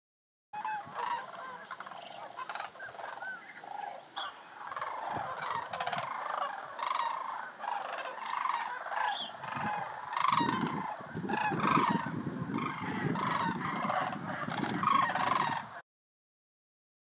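A flock of sandhill cranes calling, many overlapping rolling calls. A low rumble joins from about ten seconds in.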